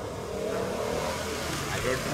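A car engine running in the street and growing louder as it passes, with a man's voice briefly near the end.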